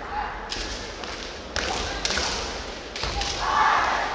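Kendo bout: sharp cracks of bamboo shinai striking and stamping footwork on a wooden floor, about three in all, with the fencers' kiai shouts, the loudest and longest near the end as one fencer lunges in to strike.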